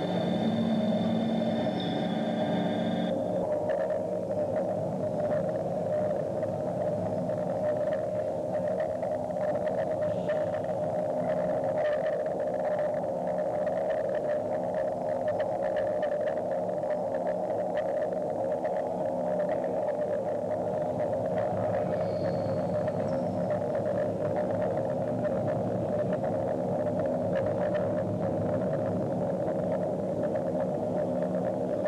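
Experimental electronic music performed live on a laptop and electronics: a dense, steady drone of held tones centred in the mid range over lower layered tones. A cluster of high tones cuts off about three seconds in.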